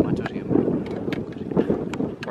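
Wind buffeting the microphone, with indistinct low chatter in the background.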